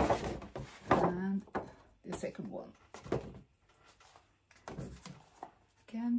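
Paper shopping bag rustling and crinkling as gift boxes are lifted out of it, with a short murmured word or hum in the first second and a half.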